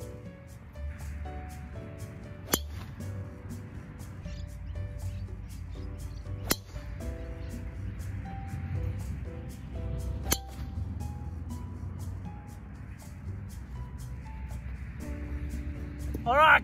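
Background music, with three sharp clicks of a golf driver striking a ball, about four seconds apart.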